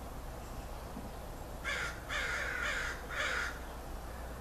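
An animal's harsh calls, four in quick succession starting a little under halfway in, over a steady low room hum.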